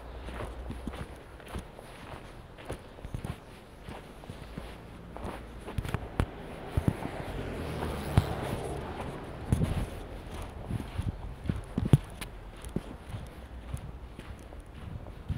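Footsteps on packed snow at a walking pace, each step a short crunch. A soft rushing sound swells and fades around the middle.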